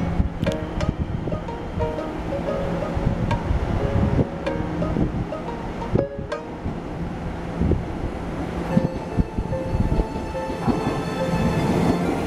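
Background music with steady melodic notes, mixed with an electric commuter train running past, its wheels clattering over the rails with irregular clicks.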